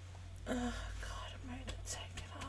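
A quiet voice speaking a few short phrases, starting about half a second in, over a steady low hum.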